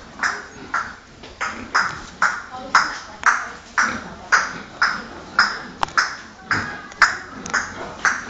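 Rhythmic scraping strokes, about two a second, each starting sharply and fading quickly.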